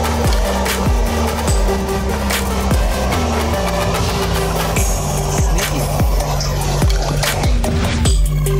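Electronic background music with a steady beat and a stepping bass line.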